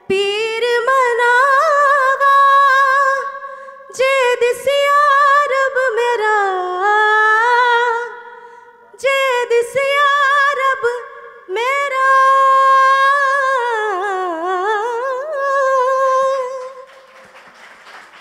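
A woman singing a Hindi film song unaccompanied into a microphone, in several long phrases with quick ornamental turns and held notes, pausing briefly for breath between them. Her singing ends about a second before the end.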